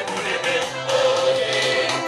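Choir singing gospel music.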